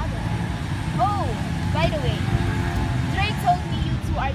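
Steady low outdoor rumble of traffic, with a young woman's voice speaking a few short phrases over it, about a second in, near the middle and near the end.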